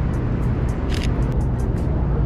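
Steady low rumble of city street traffic, with a few quick camera shutter clicks about a second in.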